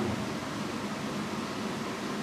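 Steady background hiss of room tone through the microphone, with no other event.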